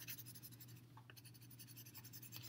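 Faint scratching of a colored pencil shading lightly back and forth on paper.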